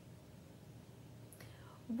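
Quiet room tone with a faint low hum. A short breath or mouth sound comes about one and a half seconds in, just before a woman starts speaking again at the end.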